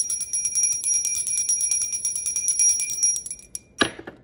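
Small brass hand bell rung quickly and continuously, a steady high ring over rapid clapper strikes that stops about three and a half seconds in. Near the end there is a single knock as the bell is set down on the wooden table.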